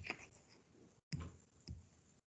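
Three faint clicks picked up by a video-call microphone, with the sound cutting out to dead silence between stretches.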